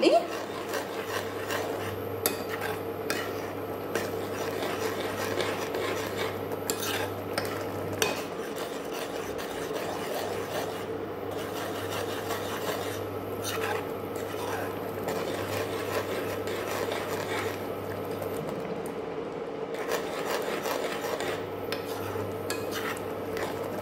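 A metal spoon stirring and scraping around an aluminium pan of milky grated-radish halwa mixture while the added sugar melts. The strokes are irregular, over a steady low hum.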